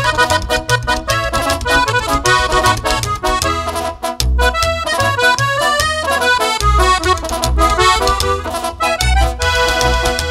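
Live norteño corrido instrumental intro: a button accordion plays a fast melody over two charchetas (upright brass alto horns) and the plucked notes of an upright bass (tololoche).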